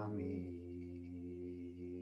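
A man and a woman chanting a Buddhist devotional chant together in long tones held on one steady pitch. Shortly after the start the sound thins and softens, then holds on a lower, quieter tone.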